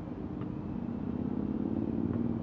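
A low, steady hum with a noisy rumble beneath it, growing a little louder toward the end, and a faint tick about half a second in.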